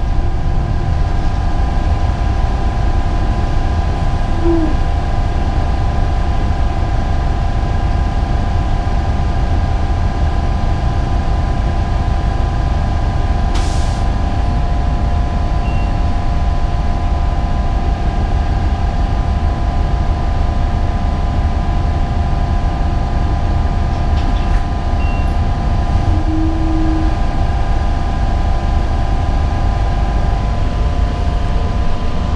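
City transit bus heard from inside the passenger cabin while driving: a steady low engine and road rumble with a steady whine held throughout. One sharp click about halfway through and a fainter one later.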